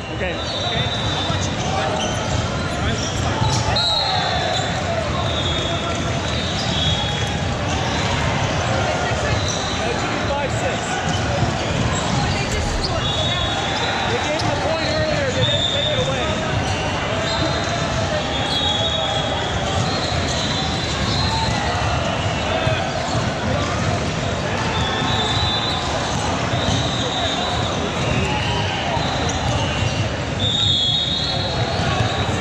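Busy volleyball gym din: players' voices and calls echoing in a large hall, balls bouncing and being struck, with short high squeaks typical of sneakers on the hardwood court.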